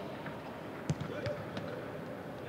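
A football being kicked during a passing drill: one sharp thump a little under halfway through and a few fainter touches, over distant shouts and calls of players.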